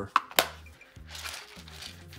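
A clear plastic compartment box of small JST connector parts being handled: two sharp plastic clicks just after the start, then a softer rattle of the small parts inside about a second in.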